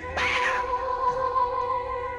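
Reggae rockers music from an off-air tape of a pirate FM radio broadcast: a short electronic sound that swoops up and back down comes in just after the start, over a steady held tone and bass.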